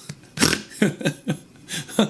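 A man laughing in about four short chuckles.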